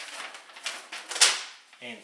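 Paper instruction leaflet rustling and crackling as it is handled and turned over, loudest about a second in.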